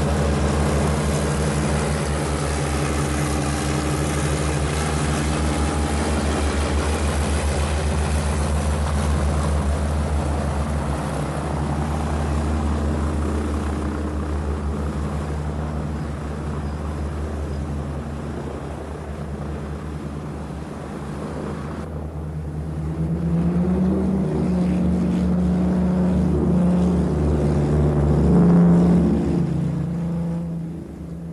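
Rolls-Royce Merlin V12 piston engines of a four-engined Canadair C-4 Argonaut airliner running with propellers turning, a steady loud drone. About two-thirds in, the engine note climbs in pitch and grows louder, peaking near the end as the engines are opened up and the aircraft takes off.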